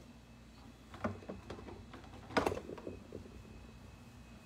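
Quiet room tone with a few soft clicks about a second in, then a sharper tap followed by several small ticks about two and a half seconds in.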